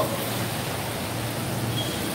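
Steady hiss of rain falling on wet pavement.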